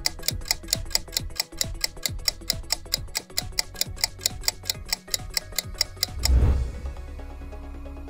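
Countdown-timer sound effect: rapid, even ticks, about five a second, over a low steady music bed. The ticking stops about six seconds in, when time runs out, and a deep rumble swells briefly.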